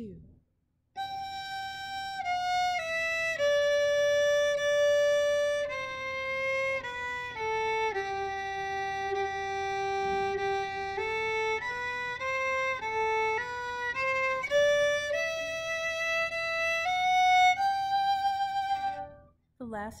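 Solo violin, bowed in third position on the D and A strings. A slow stepwise line starts on high G, walks down about an octave to the lower G, then climbs back up. Each note is held for roughly half a second to a second.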